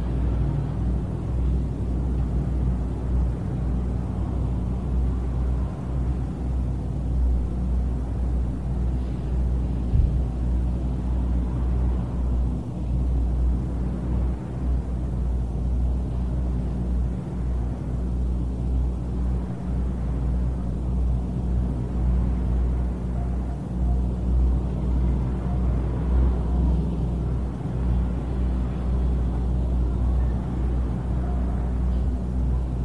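Steady low hum and rumble of background noise, with no speech, and a single brief knock about ten seconds in.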